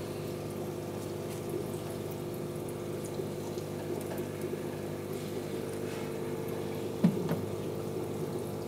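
Aquarium internal filter running: a steady electric hum with water bubbling and trickling at the surface. A single thump sounds about seven seconds in.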